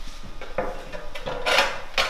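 A long 12-by-48 tile scraping and knocking against the floor and wall as it is set in place, in a few short scrapes with the loudest about one and a half seconds in.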